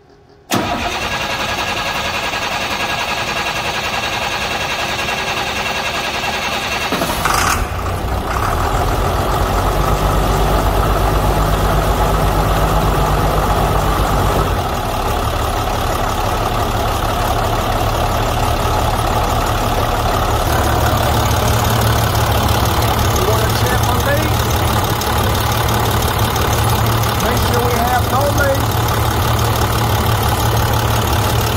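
International DT466E inline-six diesel cranking for about seven seconds as its new high-pressure oil pump builds oil pressure, then catching and settling into a steady idle. The idle note shifts twice as it settles.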